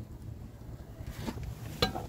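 Faint knocks and light clinks of a new oil filter being handled and lifted up among the engine parts, with one sharp click near the end.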